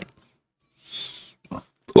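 A man's breath close to a handheld microphone in a pause between phrases: a short noisy breath about a second in, then a brief low vocal sound just before he speaks again.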